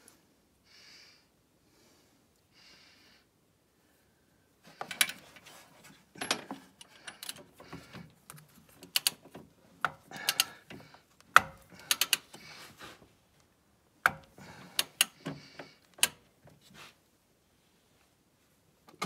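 Metal parts clicking and rattling as components are handled and fitted in a snowmobile's engine bay. The first few seconds are quiet, then come irregular bursts of sharp clicks, some in quick runs.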